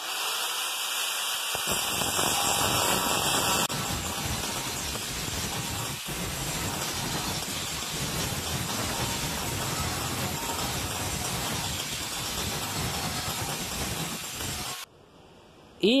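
Angle grinder with its disc grinding down tack welds on a mitred joint of thin-wall 14-gauge steel tube, smoothing the tacks before the weld bead is run. It spins up, then grinds steadily for about twelve seconds and cuts off sharply about a second before the end.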